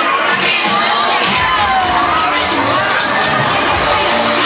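Many riders screaming and shrieking together as a swinging-arm fairground thrill ride whirls them through the air.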